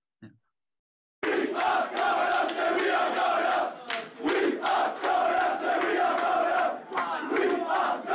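A dressing room full of footballers chanting and singing together in celebration, many loud male voices in repeated phrases, recorded on a phone. It starts suddenly about a second in, with brief breaks between phrases.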